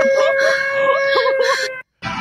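A steady, unwavering electronic alarm tone sounds with a voice over it, then cuts off suddenly near the end.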